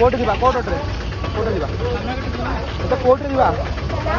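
Voices talking over a steady low rumble of idling vehicle engines.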